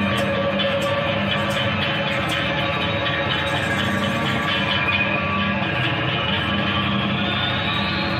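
Improvised live band music: a dense instrumental jam, with a regular high ticking over the first few seconds and an electronic tone sliding upward near the end.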